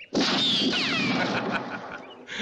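A single pistol shot, loud and sudden, with a falling ricochet whine as it dies away over about a second and a half.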